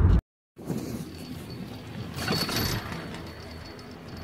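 Car cabin road noise cut off sharply, then skis sliding over packed snow, with wind rushing on the microphone and a swell of scraping a couple of seconds in.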